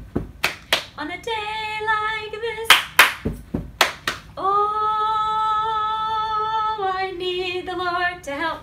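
A woman singing an a cappella action song, clapping her hands in quick pairs between the sung phrases, with one long held note in the middle.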